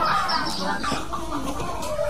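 Chickens clucking.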